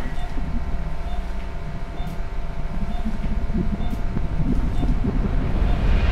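Hospital heart-monitor beeping about once a second over a steady low rumble, with a rising swell of noise building near the end.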